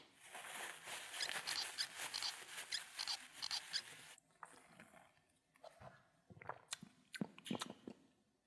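Drink being sucked up through a straw from an iced drink cup: a fluttering slurp for about four seconds, then a few faint mouth clicks and smacks.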